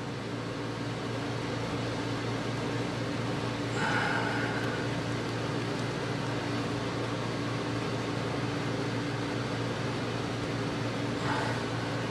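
Steady low room hum with a few held low tones under an even hiss, and a faint short tone about four seconds in.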